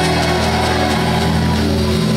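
Live band vamping on a steady held chord, with the bass and keyboard tones sustained under the rest of the band.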